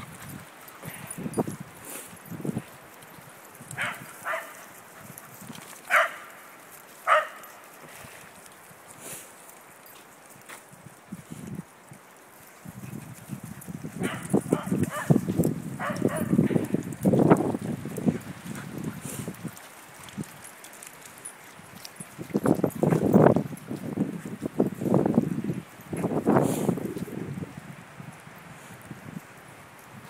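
Dogs barking and yipping as they play, a few short sharp calls early on, then longer stretches of scuffling and more barking.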